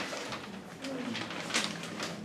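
Faint murmured voices in a small meeting room, with a brief knock about one and a half seconds in.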